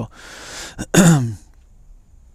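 A man breathes out audibly, then clears his throat once about a second in: a short, loud throaty sound that drops in pitch.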